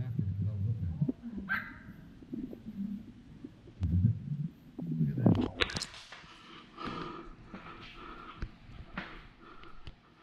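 Muffled, indistinct voice-like sounds and scattered handling knocks through a covered microphone.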